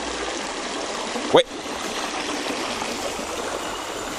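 Steady rush of a small river's flowing water, an even hiss without change. A short rising "ouais" is heard about a second in.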